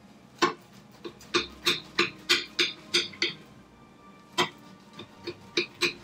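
Knife sawing through a baked apple cake and knocking against the plate under it on each stroke: a run of sharp, slightly ringing clicks about three a second, a pause around the middle, then more clicks.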